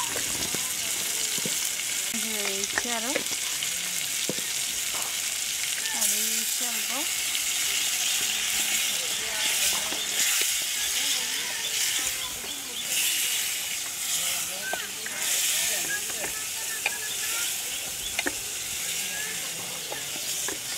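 Prawns and spices sizzling in hot oil in an aluminium pot, steadily, while a spatula stirs them through the pan.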